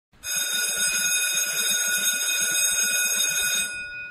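Electric school bell ringing steadily for about three and a half seconds, then cutting off: the morning bell that starts the school day.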